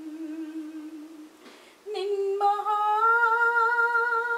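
A woman singing a slow Malayalam song in a single voice. She holds a low note for over a second, then after a short pause sings a higher note and holds it, rising slightly, to the end.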